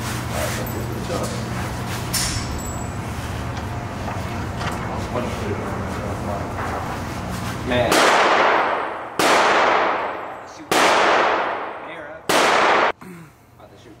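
Four gunshots inside an indoor shooting range, about a second and a half apart, starting about eight seconds in, each with a ringing echo that fades over about a second. Before them there is only a steady low hum.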